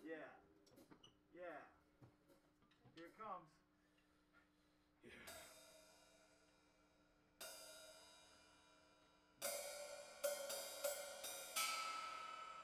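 Cymbal crashes on a drum kit, each left to ring out: one about five seconds in, another a couple of seconds later, then a quick run of cymbal and drum hits near the end. Faint voices come before the first crash.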